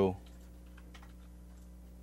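Faint, scattered clicks of computer keyboard typing over a steady low electrical hum, after a voice trails off at the start.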